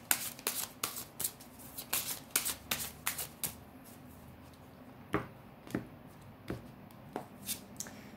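Rumi Oracle cards being shuffled by hand: a quick run of card flicks for the first three seconds or so, then a few separate card taps about half a second apart.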